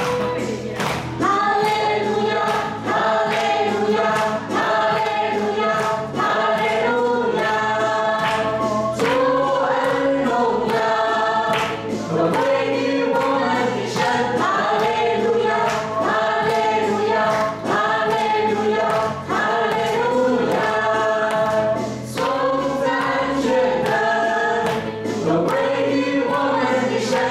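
A group of voices sings a hallelujah praise song in unison over keyboard accompaniment, with a steady beat of clapping running through it.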